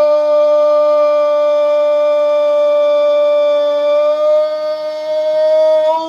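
A Brazilian Portuguese football commentator's long goal cry, "gooool", held as one loud, unbroken high note that rises slightly in pitch near the end.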